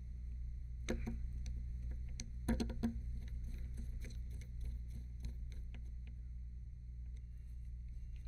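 A few faint clicks and taps from a precision screwdriver and small drone parts being handled, with a small cluster about two and a half seconds in, over a steady low hum.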